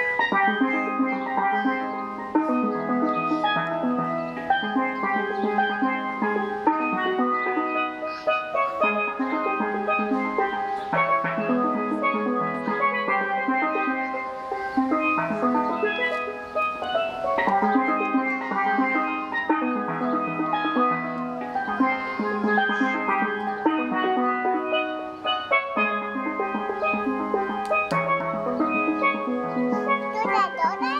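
Steel pan played solo with rubber-tipped sticks: fast runs of bright, ringing struck notes, with chords and repeated-note rolls, continuing without a break.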